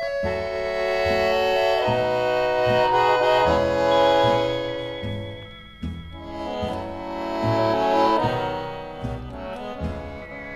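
Instrumental accordion dance music: an accordion plays long held chords and melody over steady bass notes, swelling louder twice.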